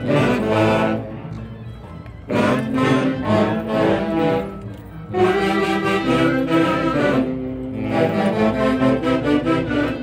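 Band with saxophones playing Chonguinos dance music, in melodic phrases that drop briefly softer twice before swelling back.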